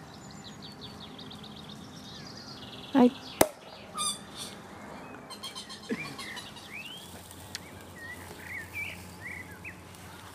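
A champagne cork pops about three and a half seconds in, with a brief loud pitched sound just before it and hissy bursts of fizz after. Birds chirp throughout.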